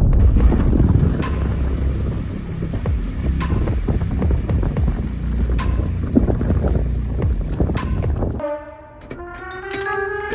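Quarry rock blast: a heavy low rumble of the detonation and cascading rock, laid under background music with a steady beat. The rumble cuts off suddenly about eight seconds in.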